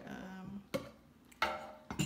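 Three sharp hard-plastic knocks, spaced about half a second apart: a blender's lid and tamper being handled against the plastic blender jar.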